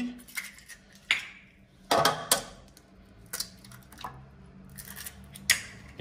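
Eggs being cracked into an enamel bowl of buttermilk: a handful of separate sharp taps and clinks of eggshell on the bowl's rim and of shells set down on a ceramic saucer.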